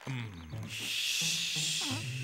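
A sleeping man's long hissing exhale, lasting a little over a second, in the middle of the stretch, over background music.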